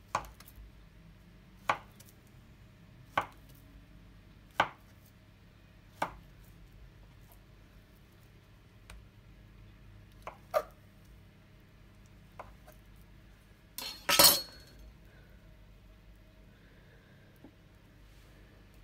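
A kitchen knife cutting through a rolled puff pastry log and knocking on the worktop: five sharp knocks about a second and a half apart, then a few lighter ones. The loudest sound is a longer clatter near the end.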